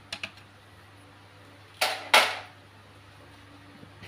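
The plastic side cover of an HP LaserJet P1006 printer being handled and set aside: a few light plastic clicks, then two short scraping swishes about two seconds in.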